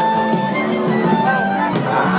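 Live band playing, with a harmonica carrying the lead in held and bending notes over the band.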